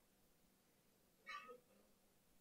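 Near silence in a room, broken once, a little over a second in, by a short high-pitched squeak.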